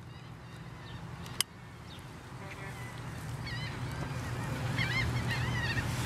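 Newspaper catching fire at its lit corners: a soft burning noise that slowly grows louder, with a sharp click about a second and a half in. From about halfway, a bird calls repeatedly in the background with short wavering high calls.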